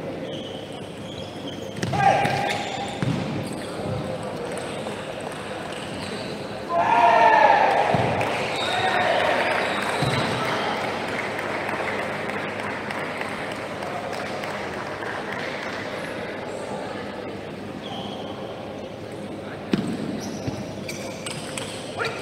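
Table tennis ball clicking off bats and table in rallies, over the chatter of voices in a large hall; the voices rise loudly about 7 seconds in.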